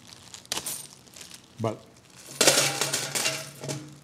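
Coins rattling in a small metal noisy-offering pail. There is a single clink about half a second in, then a dense jingling shake lasting about a second and a half near the end.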